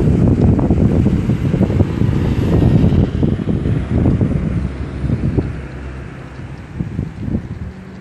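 Wind buffeting the microphone: a loud, gusty low rumble that eases off after about five seconds.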